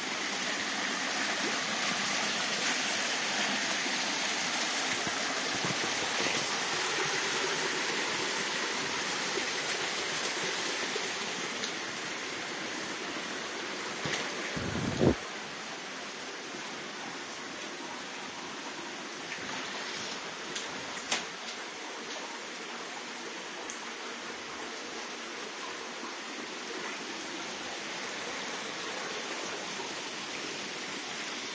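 Steady rushing of rain and running floodwater, softer in the second half, with a single sharp knock about halfway through.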